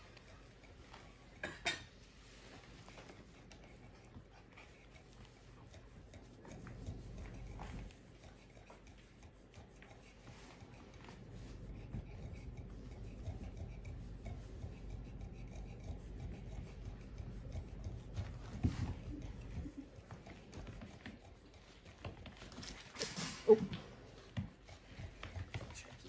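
A cloth towel on a line being dragged and rubbed across a floor mat while a puppy chases and tugs at it: low rough rustling and scuffing, with a few light knocks.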